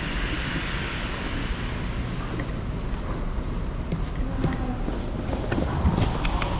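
Steady low rumble and hiss of an underground car park, with a few faint taps of footsteps in the second half.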